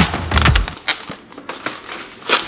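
Thin plastic film being peeled off a plastic meal tray, crinkling and crackling in a rapid run of small snaps that thins out after about a second.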